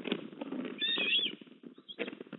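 An eastern osprey gives one short, high, wavering whistled chirp about a second in, over a continuous crackling rustle from the stick nest during a feeding.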